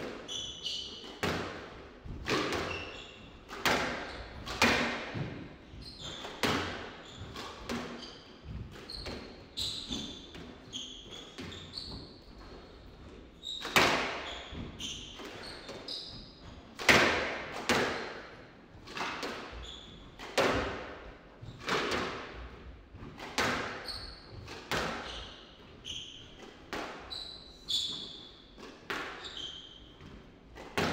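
Squash rally: the ball is struck by the rackets and hits the walls about once every second or so, each hit ringing in the enclosed court. Short squeaks of shoes on the wooden floor come between the hits.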